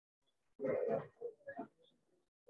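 A person's indistinct voice: a short mumble about half a second in, then two or three brief fainter sounds.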